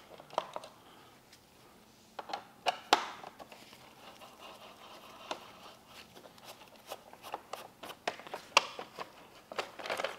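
Quiet, irregular clicks and knocks of a hand tool working bolts and a plastic fairing vent being handled, as the two bolts holding the vent in a Harley-Davidson Electra Glide fairing are removed.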